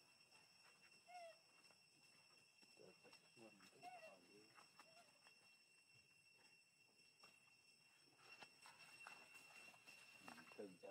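Faint squeaks and coos from young macaques: a short call about a second in and a few more around three to five seconds in.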